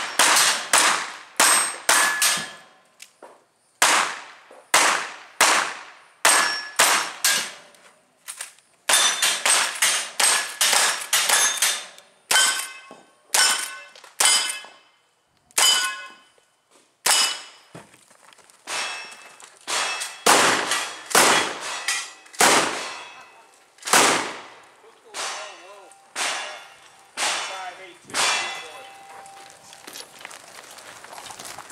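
Rapid gunfire from single-action revolvers and a lever-action rifle, shot after shot in quick runs. Each report is followed by the ringing clang of a steel target being hit. The shots come further apart in the second half.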